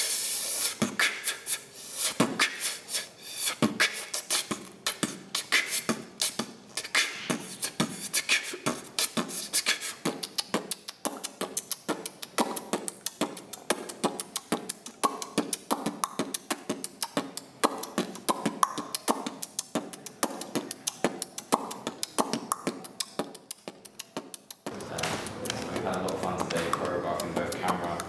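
Solo beatboxing: a fast, steady run of mouth-made kick, snare and hi-hat clicks, with short pitched vocal sounds mixed in through the middle. It stops about a second before the end.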